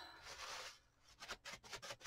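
Faint rubbing and crinkling of a paper towel: a soft brush of noise at first, then a few light ticks and crinkles.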